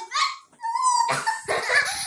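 A child's high-pitched vocal squeals: after a short pause, one held squeal, then a rougher run of yelping cries.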